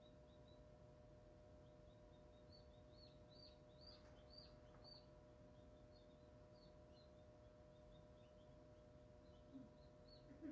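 Faint, quick peeping of a hatching chick: a run of short high chirps that grows louder about three to five seconds in, over the steady hum of the incubator's fan.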